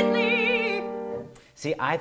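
A woman's trained singing voice ends a pop-style run on a held, wavering note over a sustained piano chord; both fade out about a second in. A man starts talking near the end.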